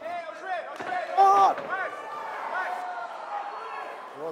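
A fighter's cornermen shouting instructions from ringside, their raised voices overlapping and loudest about a second in, over the hum of the arena.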